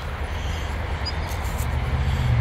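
A steady low outdoor rumble with a few faint clicks.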